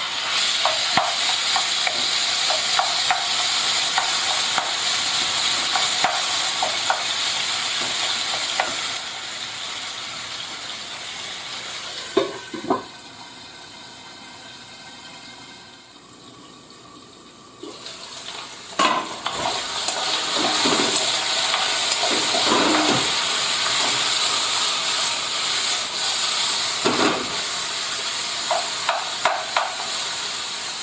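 Marinated chicken pieces frying in hot olive oil in a nonstick pan: a steady, loud sizzle, with scattered clicks and scrapes of a wooden spoon stirring. Midway the sizzle drops much quieter for about five seconds, then comes back.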